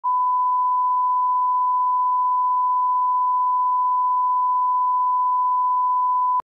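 Television test tone: a single pure beep held at one steady pitch. It is the tone broadcast with colour bars while a station is off the air before signing on.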